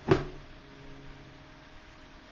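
A single sharp knock with a brief ringing tail right at the start, then only a faint steady hum.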